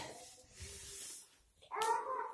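A breathy, hissing exhale with a faint strained voiced tone, a person out of breath after push-ups; a voice starts near the end.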